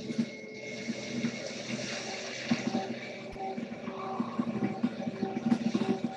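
Soft ambient meditation music: sustained low tones with a gentle, flowing hiss-like wash above them, and a higher held note joining about halfway through.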